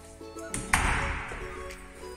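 Background music with steady, sustained notes. About half a second in, a brief, loud rushing noise rises and fades away within about half a second.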